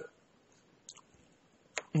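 Short pause with two faint clicks, one about a second in and a sharper one near the end, from a pen being handled and set down on paper.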